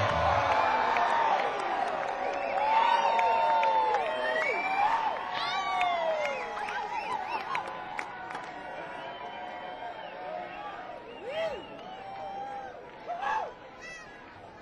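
Concert audience cheering and whooping, loudest at first and dying away, with a couple of lone shouts near the end.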